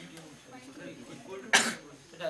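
A single short cough about one and a half seconds in, the loudest sound here, after a stretch of faint, low speech.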